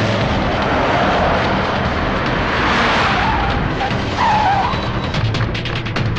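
An SUV driving fast and skidding to a stop, with engine and tyre-sliding noise that swells about halfway and a brief squeal about four seconds in, over dramatic background music.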